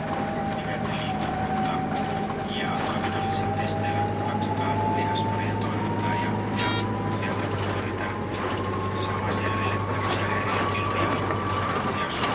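Inside a city bus under way: a steady low engine drone with a thin whine that rises slowly in pitch as the bus gains speed, and light rattles of the interior. One short sharp tick comes about two-thirds of the way in.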